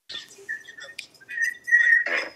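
A thin, high whistle-like tone over a telephone line, heard briefly about half a second in and again through the last half second, rising slightly, with scattered clicks as the line audio opens.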